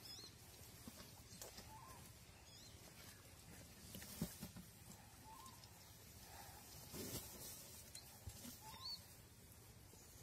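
Faint sounds of a Komodo dragon tearing at a deer carcass: a few soft thuds and crunches, the loudest about four seconds in and another around seven seconds. Short bird chirps sound now and then.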